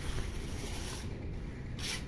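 Wet cement lining a narrow trench being rubbed smooth by hand: a long scraping rub for about the first second, then a shorter stroke near the end.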